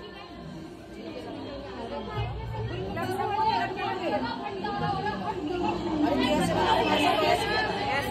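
Several people talking over one another: indistinct overlapping chatter that grows louder after the first couple of seconds.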